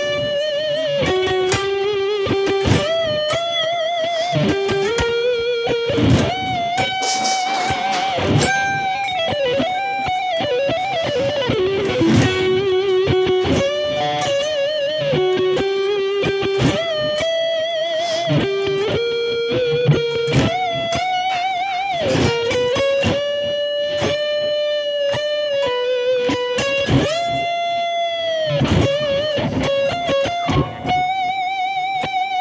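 Seven-string Ibanez Universe electric guitar playing a slow, melodic lead line through an amp. It sustains held notes with wide vibrato and string bends, with quicker picked passages between them.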